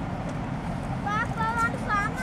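A child's high voice calls out briefly from about a second in, over a steady low rumble.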